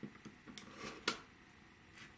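A rotary cutter trimming a small notch off layered cotton fabric against an acrylic ruler on a cutting mat: a few light clicks and short scrapes, with a sharper click about a second in.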